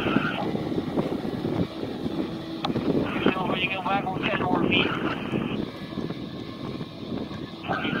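Outboard motor of an inflatable rescue boat running at speed out on the river, heard faintly under wind buffeting the microphone. Indistinct voices come through about three to five seconds in.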